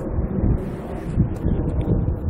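Wind buffeting the microphone outdoors, an uneven low rumble.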